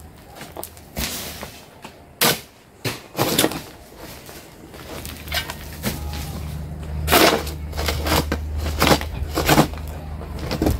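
Metal digging tool chopping and scraping into stony soil and gravel, a sharp strike every second or two, with loose dirt thrown aside. A low steady hum comes in about halfway.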